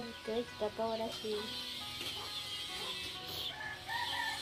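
Chickens clucking and chirping, with a few spoken words in the first second and a half.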